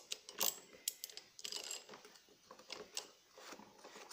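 Socket wrench tightening the centre nut of an Electrolux LTE 12 washing machine's plastic drive pulley: irregular metallic clicks and clinks, with two short runs of faster clicking.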